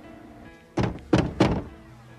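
Three heavy thuds in quick succession, about a third of a second apart, over soft background music.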